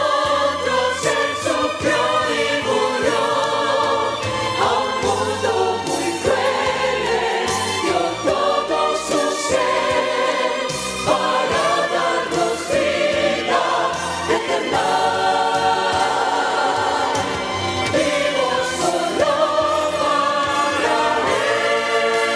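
Mixed choir of men and women singing into handheld microphones, a sacred cantata piece sung in sustained, flowing phrases.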